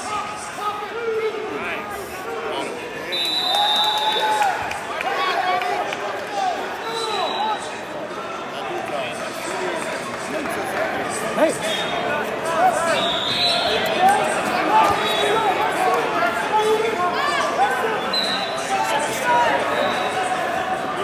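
Echoing arena crowd noise at a wrestling tournament: many voices of spectators and coaches talking and calling out at once, with no single voice standing out. A few short, steady high tones sound now and then.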